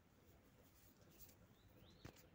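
Near silence: faint background hiss, with a faint high rising chirp from a bird twice near the end.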